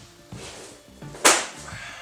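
A long, flexible strip of engineered trim moulding gives a single sharp whip-like slap about a second in as it is pulled from the pile. Background music plays with steady low notes.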